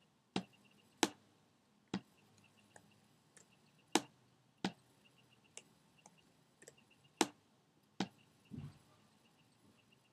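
Computer mouse clicking: a dozen or so sharp clicks at irregular intervals, about seven of them louder, the sound of stamping clone-stamp strokes in Photoshop. A brief low sound comes near the end.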